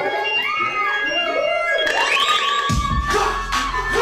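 Hip-hop instrumental beat playing through a club sound system: a gliding melodic line, then a deep bass comes in near the end.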